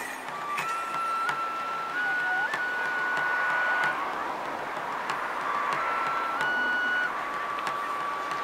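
Japanese bamboo transverse flute for kagura playing long held notes that step upward in short phrases, pausing briefly about halfway through before a lower note returns, with a few sharp strokes under it.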